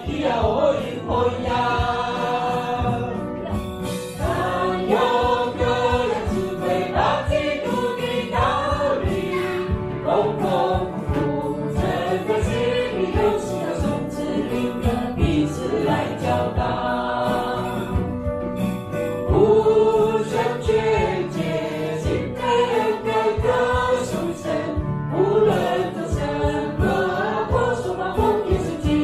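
A mixed choir of men and women singing a church song together, led by a woman's voice sung into a microphone and amplified.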